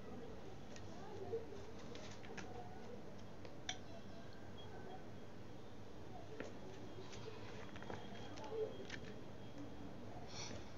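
Faint rustling and scraping of a clothes iron pressed down and shifted over cloth, with a few small clicks, over steady room noise.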